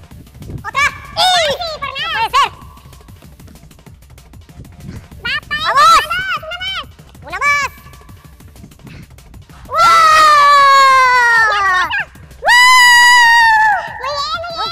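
A man's wordless cries: short rising-and-falling yelps, then two long, loud, falling yells near the end as he celebrates with both arms raised. Background music plays underneath.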